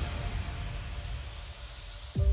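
A soft hiss over a low rumble, fading gradually: the eerie background ambience of a horror film soundtrack, left hanging between music cues.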